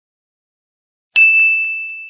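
A single bright bell ding, struck about a second in and ringing out with a slow fade: the notification-bell chime sound effect of a YouTube subscribe animation.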